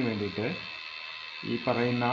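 A man's voice narrating in Malayalam, with a pause of under a second in the middle. A faint steady high-pitched whine runs underneath throughout.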